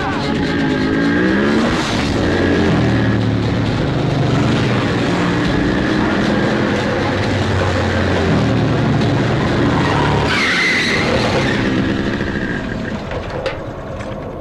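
A group of motorcycles riding past with engines running, their pitch rising and falling as they go by. About ten seconds in, a higher rising sound cuts through, like an engine being revved hard.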